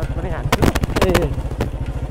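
Royal Enfield Bullet's single-cylinder engine running under way at a steady, even beat of rapid low pulses, with a voice over it.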